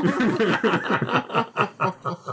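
People laughing: rapid, repeated chuckling that runs through the whole moment.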